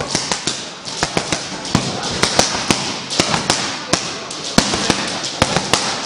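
Boxing gloves striking focus mitts in quick combinations: a run of sharp slaps, two or three a second, with short gaps between bursts.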